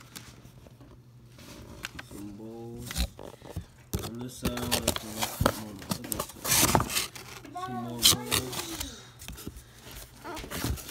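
A knife blade cutting into a cardboard box and its packing tape, with sharp scrapes and clicks and one louder ripping scratch about two-thirds of the way through. Bits of voice break in between, over a steady low hum.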